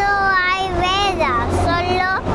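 A young boy talking, his voice drawn out and rising and falling in pitch.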